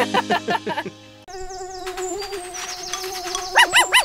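A short burst of cartoon laughter, then after a brief pause a steady buzzing hum, a cartoon mosquito sound effect, with quick bouncy up-and-down tones near the end.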